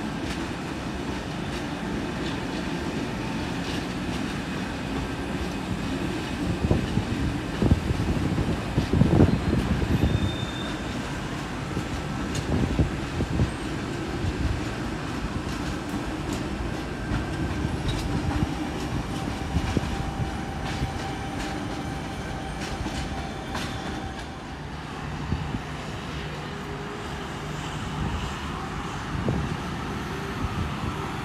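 Electric passenger train running over station tracks: a steady rumble with clattering knocks from the wheels over rail joints and points, thickest between about 6 and 14 seconds in, and a faint whine that rises and falls near the end.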